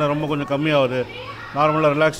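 Speech: a man talking into a handheld microphone, with children's voices behind him.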